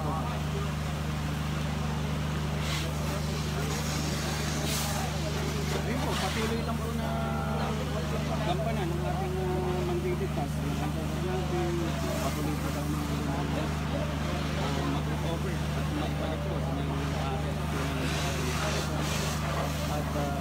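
A steady low engine hum, like a vehicle idling, runs throughout, with indistinct voices of people talking over it.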